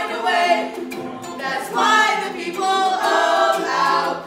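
A small group of teenage voices singing a song together, accompanied by a strummed ukulele.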